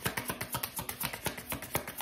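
A deck of cards being shuffled by hand: a quick, steady run of soft flicking clicks, about eight to ten a second.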